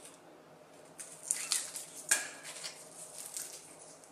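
Crisp fried samosa pastry crackling and crunching as it is lifted from a plate and torn open by hand, with a sharp snap about two seconds in.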